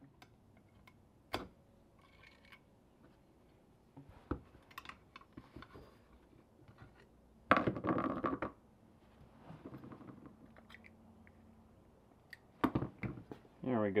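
Scattered small metal clicks and knocks, with a louder scraping burst about eight seconds in, as a dirty carburetor is taken apart by hand with a screwdriver.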